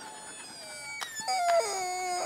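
A long, drawn-out wailing cry like a howl, held on steady notes that step downward. It starts about a second in, just after a short sharp click.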